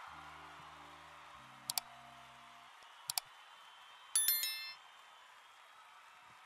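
Subscribe-button animation sound effects: soft sustained music notes with a click about two seconds in and a quick double click about a second later. Then a bright notification-bell ding rings out for under a second, the loudest sound.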